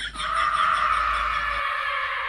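Frogs croaking in a fast pulsing trill, about seven pulses a second.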